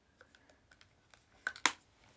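Faint taps and clicks of makeup cases being handled and picked up, ending in two sharper clicks about a second and a half in.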